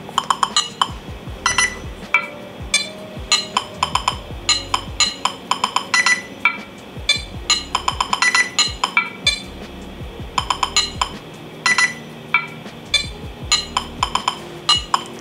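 A custom ringtone made in the Nothing Phone 2's Glyph Composer playing back on the phone. It is an irregular, quick run of short, bright, chime-like notes over lower held tones.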